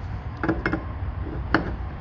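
Steel wrenches clicking against a brass flare fitting as it is snugged down on a fuel-transfer hose: three sharp metallic clicks, the loudest about a second and a half in.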